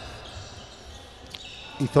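Faint bounces of a handball on the sports-hall court over the hall's reverberant background noise, with one sharper knock past the middle.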